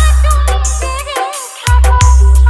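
Bengali DJ remix music with a heavy, sustained sub-bass note that cuts out about a second in and hits again near the end, under a wavering melody and crisp hi-hat ticks.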